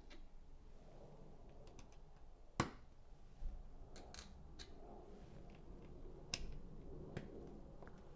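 Plastic building-brick tiles being pressed onto the studs of a baseplate: a few scattered sharp clicks, the loudest about two and a half seconds in, with a low thump just after it.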